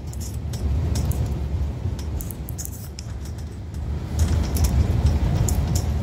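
Low, steady engine and road rumble inside the cab of a 1990 Sprinter Mallard Class C motorhome under way, with scattered light clicks and rattles.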